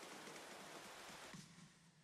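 Near silence: a faint hiss that fades out about one and a half seconds in.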